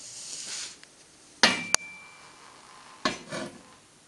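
Metal parts clanking while being handled: a light scraping at the start, then a sharp metal-on-metal knock about a second and a half in that rings briefly, and a second knock about three seconds in.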